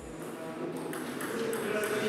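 Table tennis hall ambience: background voices and faint light clicks of a celluloid table tennis ball, with the room noise growing louder.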